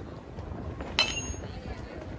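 Metal baseball bat hitting a pitched ball about a second in: one sharp ping with a brief metallic ring.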